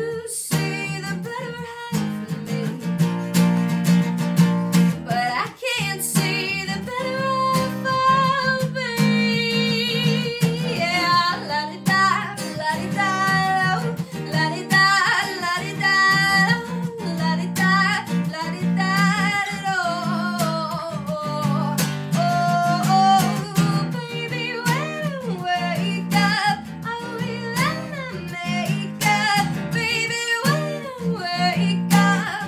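A woman singing to her own acoustic guitar accompaniment, with the voice carried over steadily played chords throughout.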